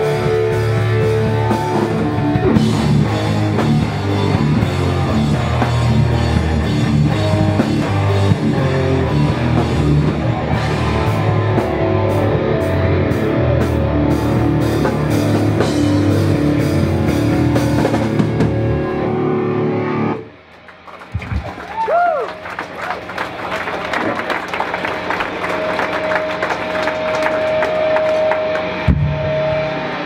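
Hardcore punk band playing live at full volume: distorted electric guitars, bass and drum kit. The song stops abruptly about two-thirds of the way through, and a held ringing tone follows over the hall's noise between songs.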